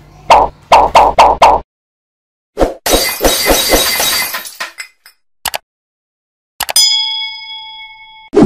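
Stock sound effects for a subscribe-button animation. A run of four sharp hits and a glittering crash-like burst are followed, near the end, by a click and a ringing bell-like ding that holds for over a second.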